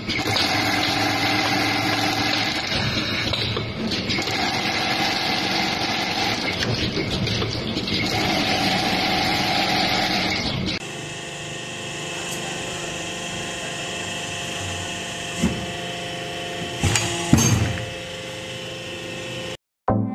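Automated factory machine working a slotted motor-core stack: dense mechanical running noise with a steady whine that comes in three times. About eleven seconds in, it changes to a quieter steady machine sound with a few sharp clicks.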